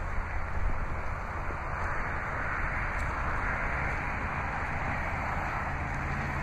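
Steady outdoor background noise: a low rumble and hum under an even hiss, unchanging and without distinct events.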